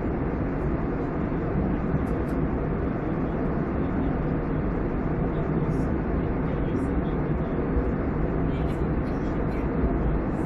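Jet airliner cabin noise in cruise flight, heard by a window seat: a steady, even rush of air and engines, weighted low, with a few faint high ticks.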